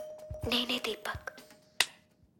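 A brief stretch of voice with a faint music tone under it, then a single sharp finger snap near the end.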